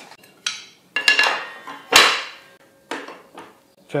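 Metal-on-metal clanks and knocks on a table saw as the blade wrench is worked on the arbor nut and the saw's parts are set back in place: a ringing clank about a second in, the loudest knock about two seconds in, and a lighter one near the end.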